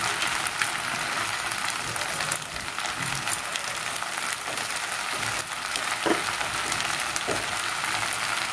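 Pasta and vegetables sizzling steadily in a hot nonstick wok, with scattered light clicks and scrapes from a spatula tossing them.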